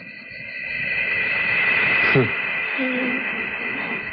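Sci-fi film sound effect for a glowing flying object: a steady high electronic whine over rushing noise that swells about halfway through. A downward swoop follows, then a short low hoot-like tone.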